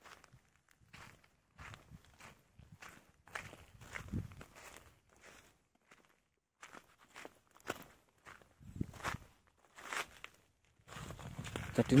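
Footsteps on loose volcanic gravel, sand and stones, a short step sound about twice a second in an uneven walking rhythm.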